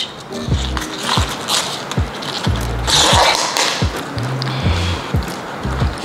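Background music with a repeating bass line and plucked notes. Around a second and again about three seconds in, a crisp rustle and snap of white cabbage leaves being peeled off the head by hand.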